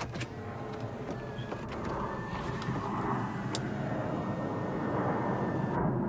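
2019 Toyota Camry panoramic glass roof opening under power: a click at the start, then a steady motor whir as the glass slides back, growing gradually louder.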